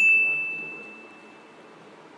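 A single bright ding, a high bell-like chime struck once, ringing out and fading away over about a second and a half.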